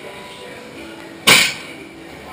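One sharp smack a little over a second in, dying away quickly: a single hard impact.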